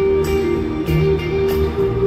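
Live band playing an instrumental passage of a slow pop song, with sustained notes changing every half second or so, heard through an arena's sound system from far back in the audience.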